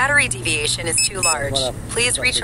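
People talking indistinctly, over a steady low hum.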